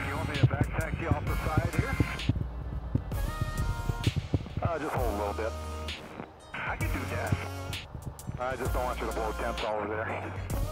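Background music with a beat and a singing voice.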